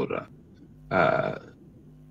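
A short wordless vocal sound from a man, about half a second long, about a second in, between pauses in his talk.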